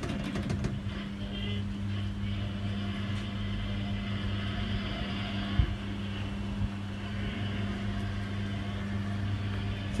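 Coin-operated kiddie ride shaped as a bus running: its electric drive motor gives a steady, even hum, with one soft knock a little past halfway.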